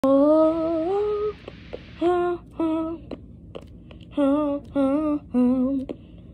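A voice, likely a woman's, singing or humming: a long wavering note first, then a string of short held notes with pauses between them.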